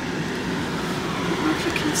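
Vehicle engine running, heard from inside the cabin as a steady hum, with the transmission put in low gear for climbing a snow-covered driveway.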